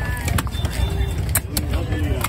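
A heavy chopper knife striking through a large fish into a wooden log chopping block, several sharp chops at an uneven pace, cutting it into steaks. A steady low rumble and background voices run underneath.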